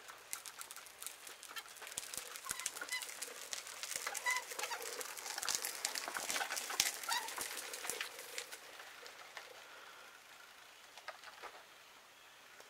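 Child's tricycle rolling over concrete, its wheels and frame rattling in a run of rapid irregular clicks that grows louder as it passes close by, then fades. A few short high chirps sound among the clicks.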